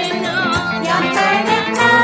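Voices singing a Malayalam Christian hymn with sustained accompaniment and a steady percussive beat.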